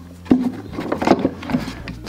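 A steel F-clamp being loosened and pulled off a wooden box: a few sharp knocks and clicks of metal and wood, the loudest about a third of a second in and another about a second in.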